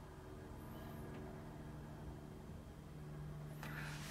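Faint steady low hum of background noise, with no distinct event.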